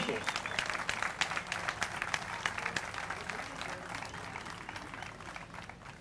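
Audience applause, a dense patter of claps, loudest at first and gradually dying away.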